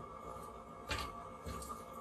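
A metal utensil knocking and scraping in a pot of frozen potting soil as it is stirred over a propane burner: one sharp knock about a second in and a softer one after. A faint steady background runs underneath.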